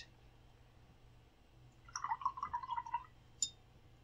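A paintbrush swished in a jar of rinse water for about a second, a faint run of quick watery clicks and clinks, followed by one sharp tap.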